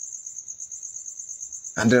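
Cricket trilling steadily, a high, even pulse of about ten chirps a second. A man's voice resumes near the end.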